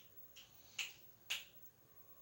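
Three faint, sharp clicks, about half a second apart, the last two the loudest, over quiet room tone.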